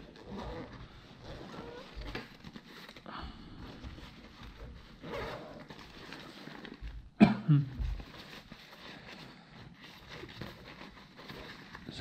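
Handling of a nylon backpack: fabric rustling and a pocket zipper being worked open, low and scattered. One brief louder sound comes about seven seconds in.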